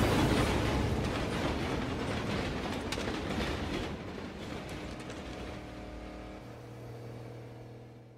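Freight train rolling past with a rattling clatter that fades away steadily. A low steady hum comes in near the end.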